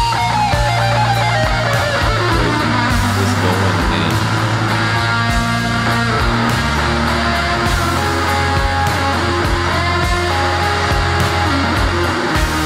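Live rock band recording: an extended electric guitar solo, its lead lines bending in pitch, over held bass notes and drums.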